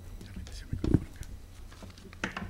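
Knocks and rustles of a podium microphone being handled and adjusted, with one loud thump a little under a second in, heard through the room's sound system.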